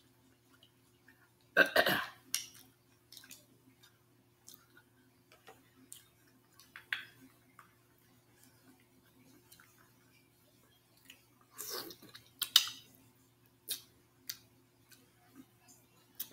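Close-miked mukbang eating sounds: a louder wet mouth noise a couple of seconds in and another burst near twelve seconds, with scattered small clicks and taps of mussel shells and fingers between, over a faint steady hum.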